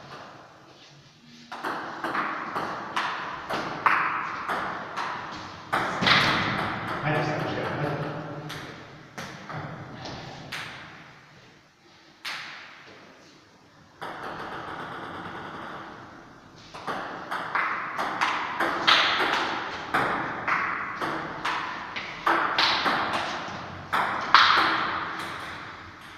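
Celluloid/plastic table tennis ball clicking back and forth off rubber-faced bats and the table top in two quick rallies, each sharp tick trailing off in the room's echo, with a lull between the rallies.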